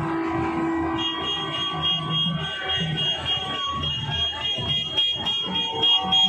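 Street procession noise: drums beating in a steady rhythm over crowd noise, with a shrill, sustained tone coming in about a second in and holding.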